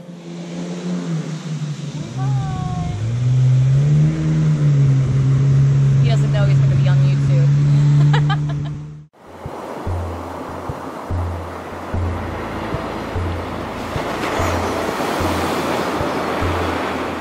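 A motorboat engine on the river running steadily, its pitch rising briefly a few seconds in, cut off suddenly at about nine seconds. Then background music with a pulsing beat over the sound of ocean waves.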